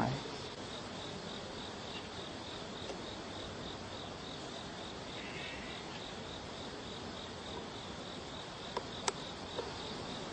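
Insects chirping in a steady, evenly pulsing high trill over a soft hiss. A few faint sharp clicks come near the end, the clearest about nine seconds in.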